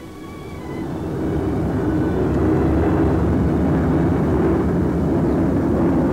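Propeller aircraft engines droning. The sound swells over the first couple of seconds and then holds steady, with background music fading under it.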